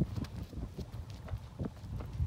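Running footsteps on an asphalt road, a regular patter of about three steps a second.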